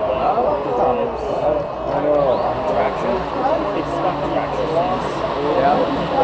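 Crowd of spectators talking, many voices overlapping with no single speaker standing out, over a steady low hum.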